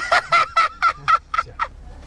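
A man laughing in a rapid, staccato run of about eight short "ha" bursts, roughly four a second, stopping shortly before the end.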